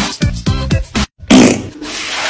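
Electronic dance music with deep, falling-pitch beats that cuts off abruptly about a second in. Then a loud, sudden wet splash followed by a hissing spray, as milk bursts out of a bowl.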